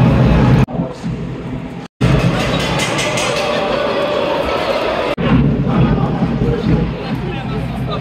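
Crowd noise in an ice hockey arena, loud and continuous, broken by abrupt edits: it drops about a second in, cuts out briefly near two seconds, and dips again around five seconds.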